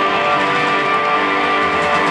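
Rock band playing live and loud, guitars strummed to the fore with a steady wall of sustained chords; no singing.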